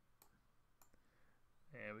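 Two faint computer mouse clicks in the first second over near-silent room tone; a man's voice starts near the end.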